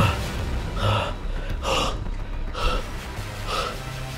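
A man breathing heavily close to the microphone, four breaths about a second apart, after a single thump at the very start.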